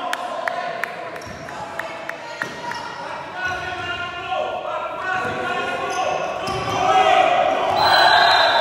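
Basketball being dribbled on a sports-hall floor, a steady run of bounces about two or three a second, with players' voices ringing in the large hall and getting louder near the end.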